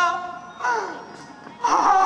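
A man's drawn-out wails of pain, a stage actor's cries as a character struck in the chest by an arrow: a long held cry that dies away just after the start, a shorter falling cry, then a loud new cry near the end.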